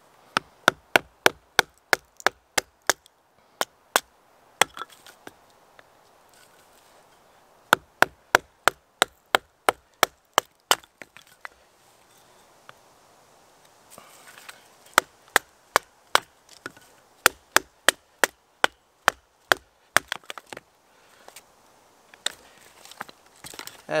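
Wooden baton striking the spine of a stainless steel Morakniv Bushcraft Orange knife, driving the blade down through a small, dry piece of wood to split it. Sharp knocks come in three quick runs of about three or four a second, with a few single knocks and pauses between.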